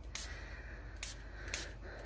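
Fine-mist spray bottle spritzing alcohol over wet epoxy resin in about four short hissing bursts, to pop the surface bubbles.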